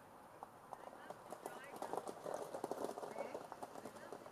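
Gravel crunching in a quick, irregular patter of small clicks that grows louder in the middle of the stretch, with a few short high chirps over it.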